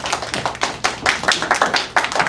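A classroom of children and their teacher clapping: a round of applause made of many quick, overlapping hand claps.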